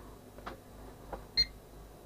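Pyronix Enforcer alarm panel keypad giving one short key-press beep about one and a half seconds in, after a couple of faint button clicks.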